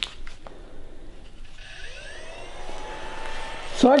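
Optrel Swiss Air powered air-purifying respirator's blower fan being switched on: a few button clicks, then from about a second and a half in the fan spins up with a rising whine and settles into a steady whine.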